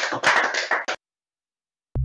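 Audience applause that cuts off abruptly about a second in, followed by dead silence; right at the end an electronic drum-machine beat kicks in.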